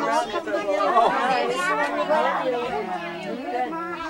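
Several people talking at once: overlapping indistinct conversation and chatter in a room full of guests.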